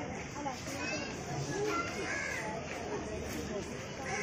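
Background chatter of several people's voices, quieter than the nearby narration, in short overlapping snatches.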